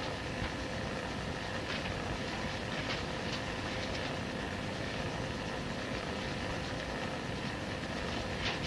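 Steady hiss and low rumble of background recording noise with a faint steady hum, and a few soft, faint rustles.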